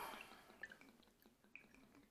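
Near silence: room tone, with two faint short ticks about half a second and a second and a half in.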